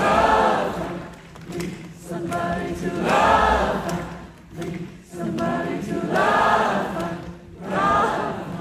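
A large concert audience singing in harmony like a choir, one sung phrase swelling and fading about every three seconds.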